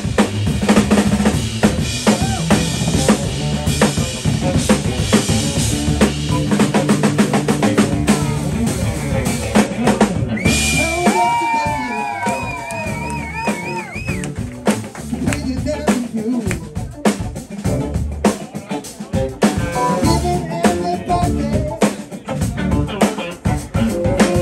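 A live blues band with a drum kit played hard and busily, with bass drum, snare and rimshots, over electric guitar and bass. About ten seconds in, a high sustained note bends and wavers with vibrato for a few seconds.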